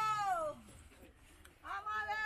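A woman wailing in grief: long, high cries that rise and fall in pitch. One cry fades out about half a second in, and another begins near the end.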